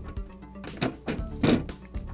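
Steel side cover of a ThinkStation E32 tower being set down and pressed onto the chassis, giving two short thunks, the second louder, over background music.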